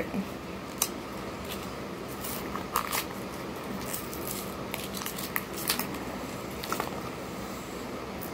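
Small cardboard eyeshadow box being handled and torn open: scattered light clicks and crinkles of card and packaging, about one every second, over a faint steady room hum.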